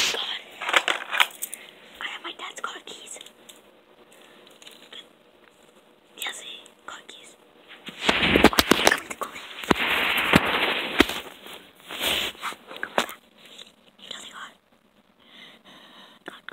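Phone microphone handling noise: scraping, rubbing and knocks as the phone is moved about against clothing, with a long, loud stretch of rubbing about eight to eleven seconds in.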